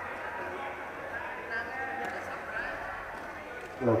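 Indistinct chatter of several people's voices around a sports hall, with one man's voice rising loud just before the end.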